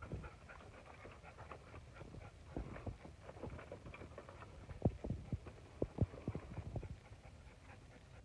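Irregular crackling and snapping of dry brush and dead wood as someone moves through it on foot, with a few louder knocks about five and six seconds in.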